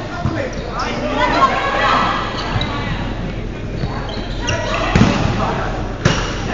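Players' voices talking and calling out across a large gym, with a ball thudding on the hardwood floor, the loudest thud about five seconds in.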